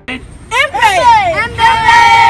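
A group of kids' voices whooping together in sliding pitches about half a second in, then settling into a long held sung note near the end.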